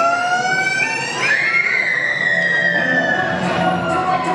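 A wailing, siren-like pitched tone played over the hall's sound system as part of the dance's soundtrack. It holds and creeps upward, then about a second in a higher wail starts and slowly falls in pitch.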